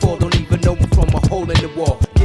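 Hip-hop record mixed live on vinyl turntables: a drum beat with a rap vocal phrase cut into short repeated stutters ("if... if...") by the DJ working the record and mixer.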